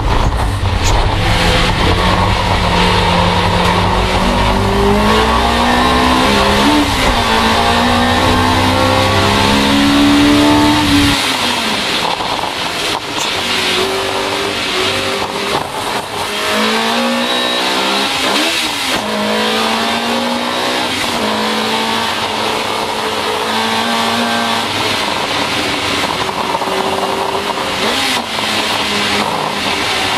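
Opel Kadett GT/E race car's four-cylinder engine heard from inside the cockpit under hard acceleration, its pitch climbing through each gear and dropping back at the gear changes several times. About eleven seconds in, the deep booming part of the sound falls away and the note carries on thinner.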